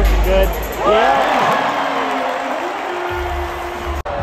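Basketball arena crowd during live play: voices shouting over the arena's PA music, with one long held note through the second half.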